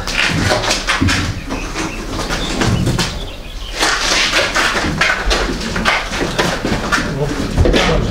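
Repeated knocks and scrapes of a refrigerator being lifted, tilted and pushed into a car's hatchback, with a brief lull a little after three seconds.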